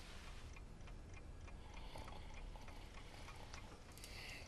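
A clock ticking steadily in a quiet room, faint, over a low hum of room tone.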